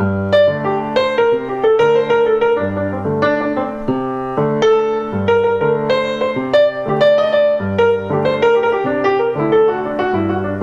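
Grand piano played in a jazz style: the left hand repeats a fixed ostinato of low chords while the right hand improvises a busy line of quick notes over it.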